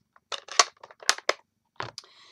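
A quick run of sharp clicks and knocks as small hard craft tools and supplies are handled and set down on the work surface, loudest about halfway through.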